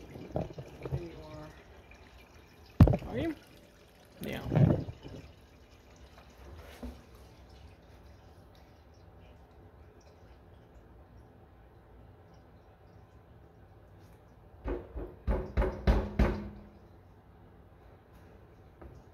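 Diesel fuel trickling from a tractor's fuel-tank drain valve through a funnel into a fuel can, faint and steady. There is a sharp knock about three seconds in and a cluster of knocks and clatters near the end.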